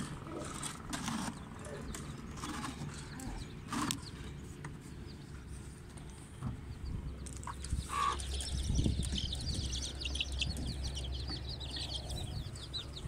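A plastic chick drinker is handled, with a few knocks and clicks as it is turned over and set down. About seven seconds in, many young chicks start peeping quickly and steadily.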